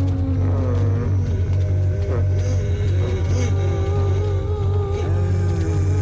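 Film soundtrack of a zombie crowd: several overlapping long, wavering groans and moans over a steady low drone.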